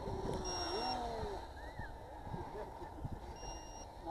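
Two short electronic beeps about three seconds apart, each a single steady high tone, over a steady low rumble of noise with faint distant voices.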